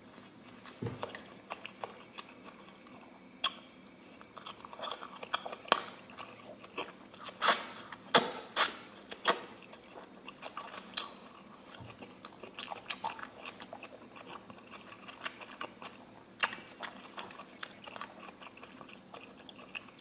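Close-up chewing of a mouthful of lo mein noodles, with irregular wet mouth smacks and sharp clicks. A louder run of clicks comes about halfway through, and another a few seconds before the end.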